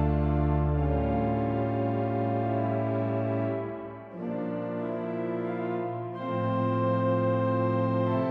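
1899 Cavaillé-Coll/Mutin pipe organ playing slow, held chords that change about a second in, again at four seconds after a brief dip, and near six seconds. A low pedal note sounds under the opening chord and drops out after about a second.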